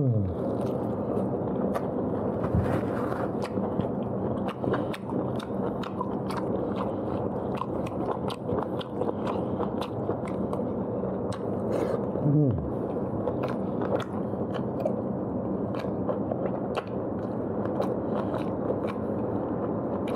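A person chewing and biting into pork leg meat, with many quick wet mouth clicks and smacks. A short falling "mmm"-like voice sound comes about twelve seconds in, over a steady background hum.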